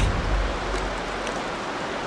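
Steady rushing of a fast-flowing river running through rapids and whitewater.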